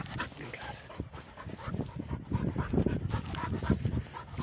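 Spaniel panting rapidly close to the microphone, out of breath after a long retrieve, with low wind rumble on the microphone.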